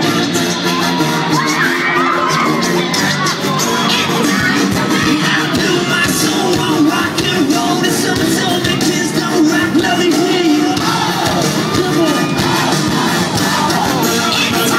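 Loud live band music with electric guitar, heard from within the audience, with the crowd cheering and shouting over it.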